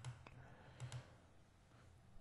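Near silence: room tone, with a few faint short clicks in the first second.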